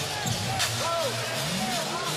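Basketball game sound from the court: a ball being dribbled on the hardwood, with short sneaker squeaks, over arena crowd noise and music.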